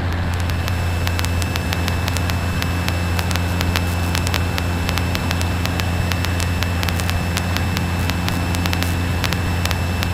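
Cessna 150's four-cylinder Continental O-200 engine and propeller droning steadily in cruise, heard inside the small cabin. Scattered faint clicks run over the drone.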